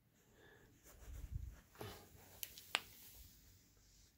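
Faint handling noise from a camera being picked up and carried: low rustling knocks about a second in, then a few sharp clicks, the loudest a little past the middle.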